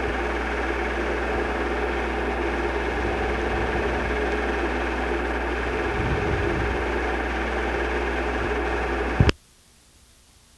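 A steady mechanical whir with a low electrical hum, cut off by a sharp click about nine seconds in, leaving only faint hiss.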